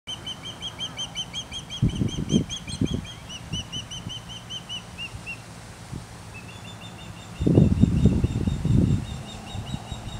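Osprey calling: a long series of short, high whistled chirps, about five a second. They pause past halfway and start again slightly higher. Two spells of low rumbling bursts, the loudest sound, come about two seconds in and again near the end.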